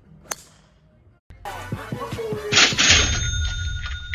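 A golf club striking a teed ball once with a sharp click. Just after a second in, the sound cuts out and a loud music sting starts, with a falling whoosh and steady high ringing tones.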